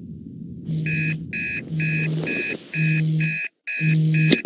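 Electronic alarm beeping in short, evenly repeated pulses, about two to three a second, with a deeper tone under every other beep. It starts under a second in over a low rumble, stops briefly near the end, and then resumes.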